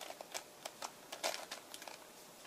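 Plastic layers of a 3x3x3 Mix-Up Plus twisty puzzle turned by hand: faint, irregular clicks and clacks of the pieces as each turn is made.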